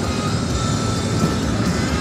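Steady road and engine noise inside a moving car's cabin, with music playing underneath.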